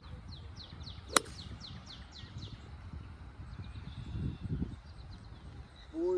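A hybrid golf club striking a ball off the tee: one sharp crack about a second in. Around it a bird sings a quick run of short, high, falling chirps, about four a second.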